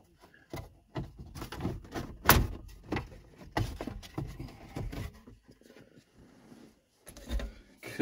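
Plastic instrument-cluster bezel of a Ford F-150 dash being pried off with a trim pry tool: an irregular run of clicks and snaps as the retaining clips let go, the loudest about two seconds in, then a last few near the end.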